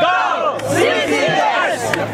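A dragon boat team shouting a loud team cheer together, "Go CCS, Go CCS!", many voices overlapping.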